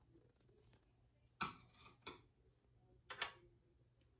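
Near silence broken by three faint, brief handling sounds, about a second and a half in, at two seconds and just after three seconds: small ceramic ingredient dishes being handled and set down on a kitchen counter.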